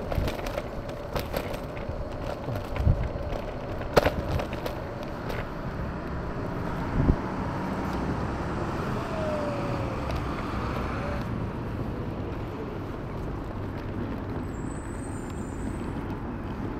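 City street traffic and road noise heard from a moving e-scooter, with a sharp knock about four seconds in and another about seven seconds in.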